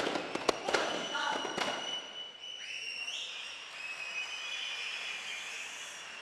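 A few last strikes on duff frame drums with a shout, then about two seconds in a steady crackling applause with several high, steady tones over it that step up in pitch.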